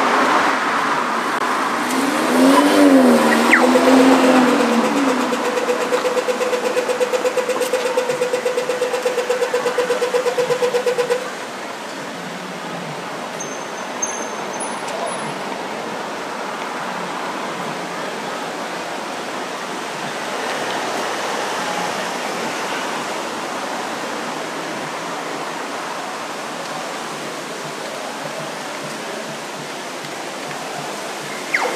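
Australian pedestrian crossing signal at a traffic-light intersection: a warbling tone, then rapid ticking at a steady pitch while the walk light is on, which stops suddenly about a third of the way in. City traffic runs on underneath and afterwards.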